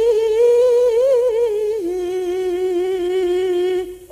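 A solo female voice in Javanese Banyumasan style holds one long, unaccompanied sung note with a wavering vibrato. A little before halfway it steps down in pitch, then holds again until it stops just before the end.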